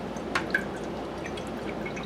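Ferric chloride etchant poured from a plastic bottle into a glass dish: a steady trickle of liquid, with two light drips or clicks about a third and half a second in.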